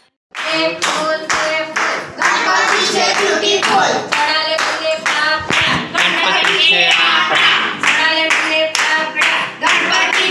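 A group of people, women and a child among them, singing a devotional song together and keeping time with steady, rhythmic hand-clapping. It starts a moment in, after a brief silence.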